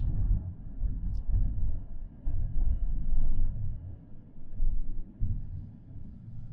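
Low, uneven rumble of a car on the move, heard inside the cabin: road and tyre noise that swells and fades, with a faint tick about a second in.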